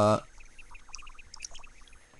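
A man's drawn-out spoken "uh" trailing off, then faint background noise with a few soft, scattered ticks.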